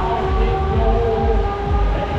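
Chaos Pendel pendulum ride in motion, heard from on board: a loud, continuous rumble of wind and ride noise that surges as the ride swings, with steady held tones on top.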